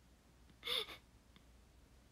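A young woman's short breathy laugh, a single falling 'ha' about two-thirds of a second into an otherwise low room tone.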